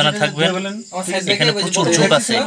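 A man's voice in long, wavering, drawn-out tones, sung rather than spoken.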